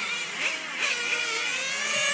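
Small nitro glow engine of an XRAY NT1 radio-controlled touring car whining at a distance, its pitch rising and falling several times as it revs up and backs off.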